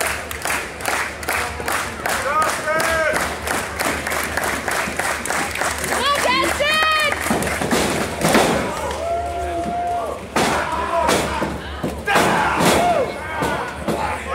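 Crowd clapping in a steady rhythm, about three claps a second, with voices yelling. Heavy thuds of bodies slamming onto a wrestling ring's mat come a few times, the loudest about eight seconds in.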